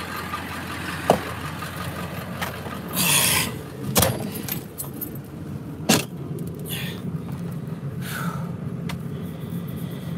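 Vehicle engine idling with a steady low hum, heard from inside the cab. A few sharp clicks and knocks sound over it, the loudest about four and six seconds in.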